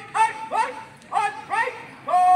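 Drill commander shouting short marching calls, four sharp cries about half a second apart, setting the squad's pace.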